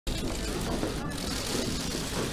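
Indistinct murmur of voices from the surrounding press and photographers, with no clear words, over a steady noisy room rumble.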